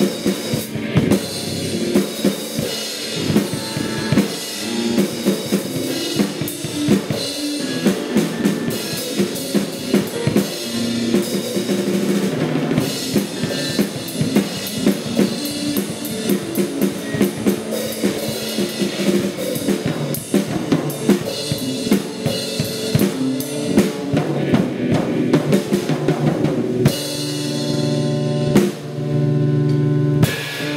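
Live instrumental band music: a drum kit playing busy, dense patterns of snare and bass drum hits over sustained electric guitar and keyboard tones. Near the end the drumming thins out and a held low chord comes forward.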